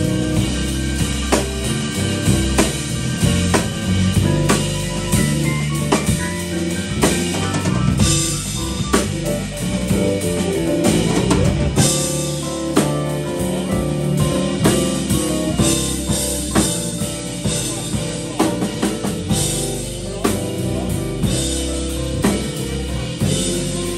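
Live blues jam band playing an instrumental passage: drum kit keeping a steady beat under electric bass, keyboards and electric guitar.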